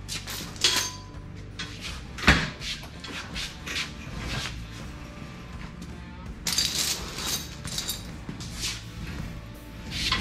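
Background music under intermittent metal clanks and chain rattles from a shop engine hoist and its lifting chain as a hanging engine is worked out and wheeled over a concrete floor. One sharp clank about two seconds in is the loudest, with another cluster of clatter past the middle.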